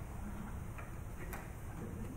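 Quiet hall room noise with a few faint clicks, one a little clearer past the middle.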